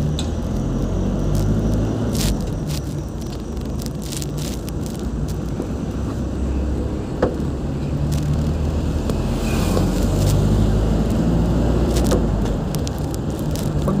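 Engine of a road vehicle running steadily as it drives along, its pitch drifting slightly up and down over road noise. A single sharp click comes about seven seconds in.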